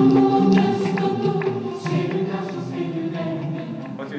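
Recorded song from a CD blending Azerbaijani and Norwegian music, played back in a hall: several voices singing held notes together, choir-like.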